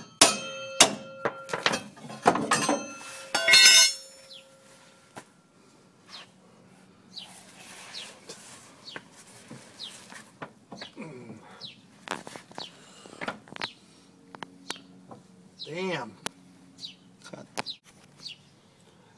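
Steel crowbar clanking and scraping against the rear leaf-spring shackle and frame while prying the shackle free of its seized rubber bushing. A run of sharp, ringing metal knocks comes in the first few seconds, then quieter knocks and scrapes.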